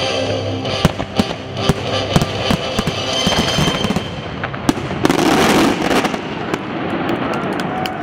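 Fireworks bursting in quick succession, sharp bangs one after another, building to a dense, continuous volley about five seconds in.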